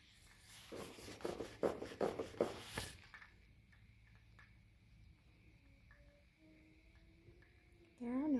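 A Norwex microfibre dust mitt rubbing against blind slats: about half a dozen quick, scratchy wiping strokes over the first three seconds.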